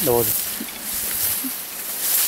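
Tall grass and thicket brushing and rustling against the camera and clothing as someone pushes through it on foot, with a short vocal sound right at the start.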